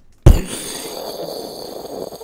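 An explosion-like 'mind blown' noise: a sudden, very loud thump into the microphone followed by a rushing hiss that lasts about two seconds and dies away near the end.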